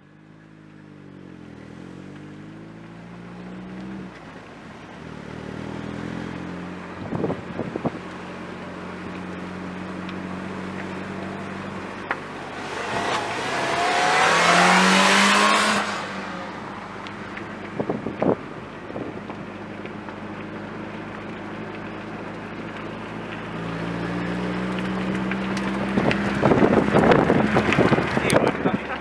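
Nissan Almera N16 hatchback driving by. Its engine note and tyre rush swell loudest as it passes, about halfway through, and the engine gets louder again near the end.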